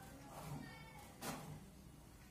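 HP DeskJet inkjet printer's mechanism working after a print, faint: short whirs and clicks about a second apart, with brief thin motor whines.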